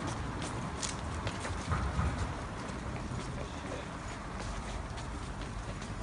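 Footsteps of people walking on pavement, heard as irregular short clicks, with low handling rumble on a handheld phone's microphone as the person filming moves along.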